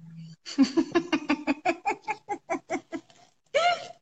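A woman laughing: a run of quick, rhythmic "ha" pulses, about five a second, trailing off after about three seconds, then one short voiced sound near the end.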